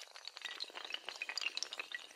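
Many dominoes toppling in chains, a dense, rapid clatter of small hard clicks.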